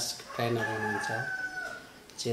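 A long, slightly falling call held about a second in the background, over a few words from a man's voice.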